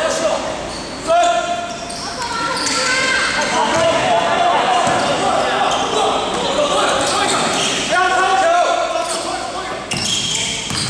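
Indoor basketball game: a ball dribbling on the court and players calling out, echoing in a large gym hall. Short loud calls come about a second in and again near the end.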